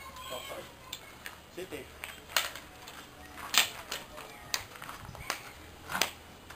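Fighting sticks knocking against each other several times at an uneven pace in a stick-fighting sparring drill, with sharp clacks. The loudest comes about three and a half seconds in.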